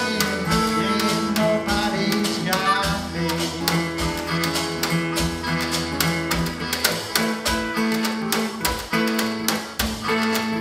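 A live acoustic blues band playing an instrumental passage. An acoustic guitar strums steady chords, a harmonica plays bending held notes over it, and percussion keeps a regular beat.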